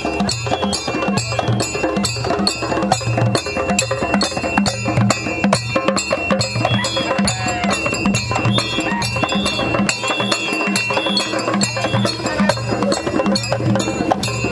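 Traditional Jola ritual percussion: hand drums and struck iron instruments playing a steady, fast, even beat with a ringing metallic tone over the drum thuds.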